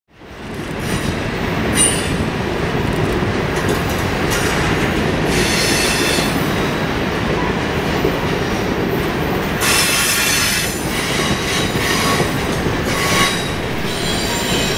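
Freight train of covered hopper cars rolling past close by: steady wheel-on-rail rumble with bursts of high-pitched wheel squeal. The sound fades in over the first second.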